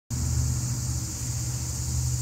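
A steady low rumble, the loudest sound, easing off near the end, over a continuous high-pitched insect chorus.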